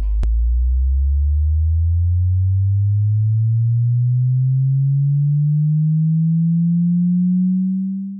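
A low, pure electronic tone gliding slowly and evenly upward in pitch, steady in loudness, with a click just after the start as the preceding music cuts off.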